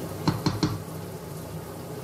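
Wooden spoon knocking against a stainless steel pot, four quick knocks within the first second.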